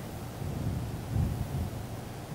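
Low rumble of handling noise on a handheld microphone held at the mouth, with a soft low thump just past a second in.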